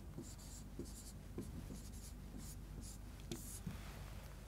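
Chalk writing on a chalkboard: a series of faint, short scratching strokes and light taps as the letters and number are written.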